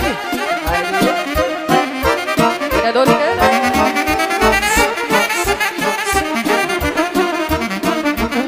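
Live band playing an instrumental passage of Romanian party music: a wind-instrument lead melody over accompaniment and a steady beat.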